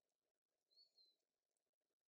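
Near silence: room tone, with one faint, short high-pitched sound a little under a second in.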